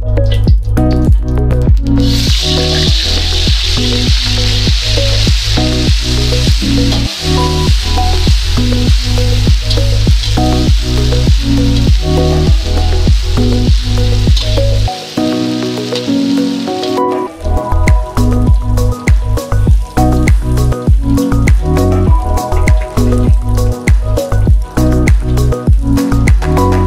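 Background music with a steady beat throughout. Under it, oil sizzles in a wok as a pounded spice paste is stir-fried, starting about two seconds in and cutting off suddenly about fifteen seconds later.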